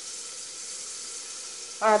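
Chopped onion and tomato frying in ghee in an aluminium pressure cooker: a steady, soft sizzle.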